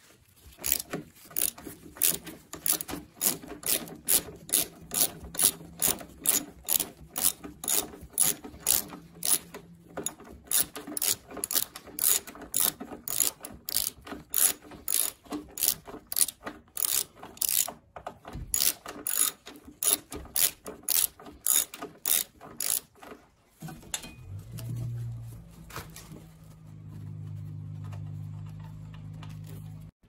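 Hand socket ratchet clicking in a long run of back-swings, about three clicks a second with a couple of short pauses, as a seat bolt on a motorcycle is loosened. Near the end the clicking stops and a low steady hum takes over.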